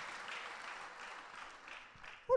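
Faint applause from a congregation, tapering off gradually.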